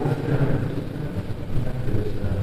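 Low, steady background rumble under a pause in the talk, with no clear event standing out.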